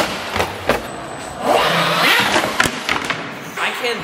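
RC monster truck's motor revving in two bursts, with its tires spinning, and two sharp knocks as the truck hits the ramp and wall.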